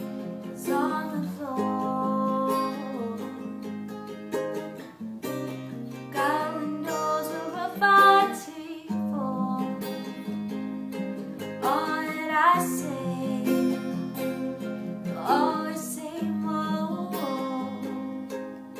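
A woman singing over a Martin acoustic guitar and a green Kala ukulele strumming chords together, the voice coming in phrases with short gaps between them.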